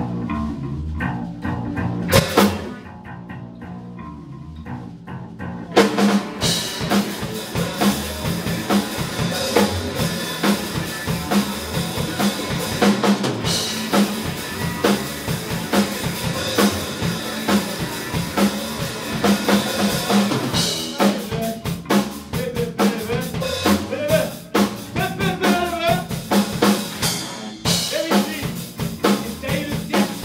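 A three-piece band playing live in a small room: electric guitar and bass guitar, with a drum hit about two seconds in. After a quieter stretch, the full band with drum kit comes in about six seconds in and keeps a steady beat.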